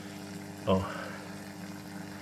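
A small terrarium waterfall running: the humming of its little water pump under a steady trickle of water down the rock wall. A brief voice sound cuts in once, just under a second in.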